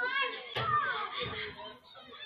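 Several young, high-pitched voices talking over each other close to the microphone, loudest in the first second.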